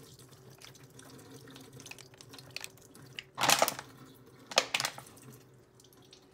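A thin stream of water forced through a Sawyer Mini squeeze filter runs into a stainless steel sink. A few loud, sharp bursts come in the second half, around three and a half and four and a half seconds in.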